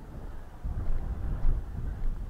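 Wind buffeting the microphone: a gusty low rumble that picks up about half a second in.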